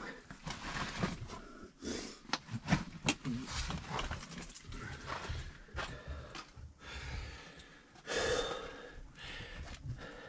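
A person breathing hard while clambering down under a boulder in a lava tube. Irregular scrapes and knocks of hands, clothing and gear against rough rock sound throughout, with a louder breath-like swell about eight seconds in.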